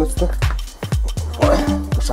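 Background music with a steady beat, with a domestic cat meowing briefly about one and a half seconds in.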